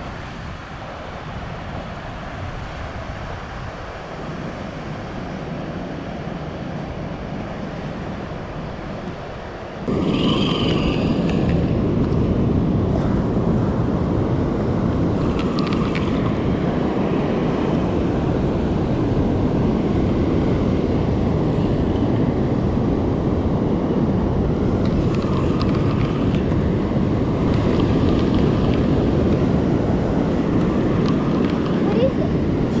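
Wind buffeting the microphone over the steady rush of surf on an open beach. It jumps abruptly to a louder, constant rumble about ten seconds in.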